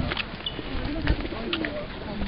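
Pigeons cooing, a string of short, low, rolling coos.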